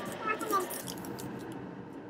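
A tea sachet crinkling briefly as it is picked up from the table, a short run of small crackles in the first second, after a brief murmured word.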